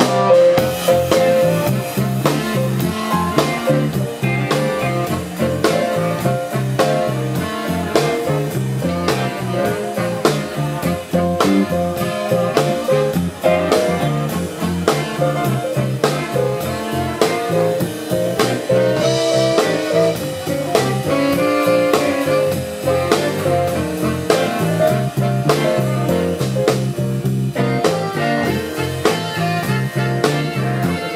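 Live deep-soul band playing an instrumental groove: drum kit keeping a steady beat under electric guitar, with trumpet and saxophone.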